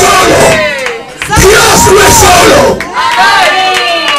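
A man's fervent, loud shouted cries into a hand microphone over the sound system, without recognisable words, breaking off briefly about a second in and again near three seconds.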